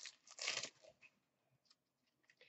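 A short dry rustle of trading cards being handled and slid against each other, about half a second in.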